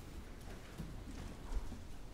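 A congregation sitting back down in wooden pews: scattered knocks and shuffling, with one louder thump about one and a half seconds in.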